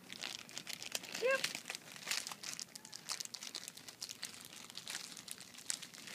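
Crinkling, crackling rustle: a dense run of small sharp crackles through the whole stretch, with one short pitched vocal sound about a second in.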